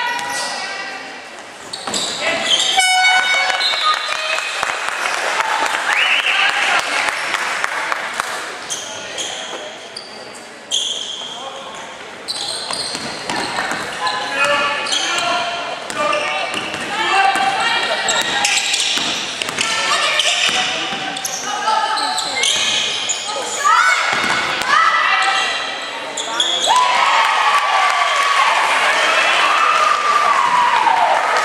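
Basketball game on a hardwood court in a large echoing gym: the ball bouncing, sneakers squeaking and players calling out. A short buzzer-like horn sounds about three seconds in.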